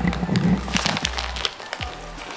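Biting into and chewing a crisp, freshly made waffle: crunching with a cluster of sharp crackles about three-quarters of a second in.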